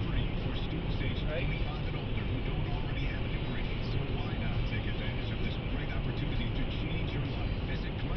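Steady road and engine rumble of a car cruising on a highway, heard from inside the cabin, with indistinct talk from the car radio over it.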